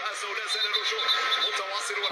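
Thin, tinny speech with no low end, like a voice heard through a small speaker or radio.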